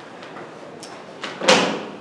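A few faint clicks, then one sharp bang about one and a half seconds in, with a short echo as it dies away in a large room.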